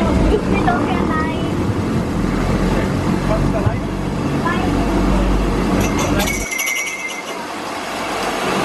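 A rider rolling down an enclosed metal roller slide: the rollers under the rider rumble and clatter steadily. About six and a half seconds in, the low rumble drops away, leaving a thinner, higher rattle.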